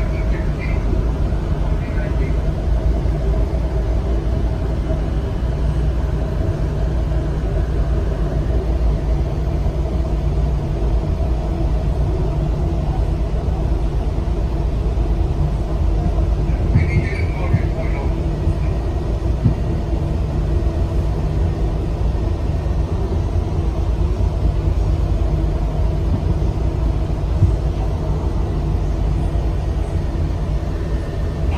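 Miami Metrorail train running along its elevated track, heard from inside the front cab: a steady low rumble of wheels on rail with a steady hum over it.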